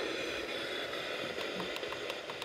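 Clock radio speaker hissing with FM static at low volume. About two-thirds in, a quick run of short, evenly spaced clicks begins as the tuning button is pressed repeatedly.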